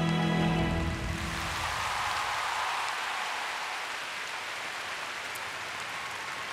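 The skaters' program music ends in the first second or two, giving way to a large arena crowd applauding and cheering, which eases slightly toward the end.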